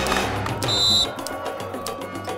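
Intro jingle music for an animated logo, with a short bright high chime a little before the middle; the music eases off slightly after it.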